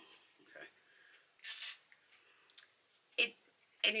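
One short hiss from a fine-mist setting spray bottle, about a second and a half in. A shorter, softer noise follows near the end.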